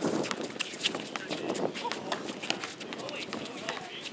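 Basketball players running on an outdoor hard court: a patter of quick sneaker footfalls and scuffs, with players' voices calling out.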